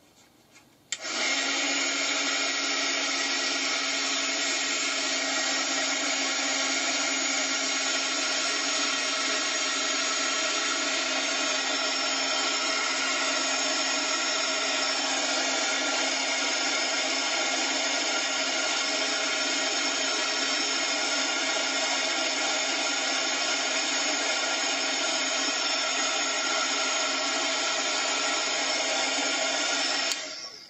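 Craft heat gun switched on about a second in and running steadily, its fan motor humming and blowing hot air to dry wet watercolour paint.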